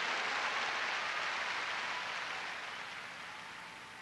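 Congregation applauding, the clapping dying away gradually.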